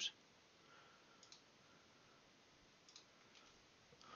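Near silence with a few faint computer mouse clicks: a quick pair about a second in, another pair near three seconds, and a single click just after.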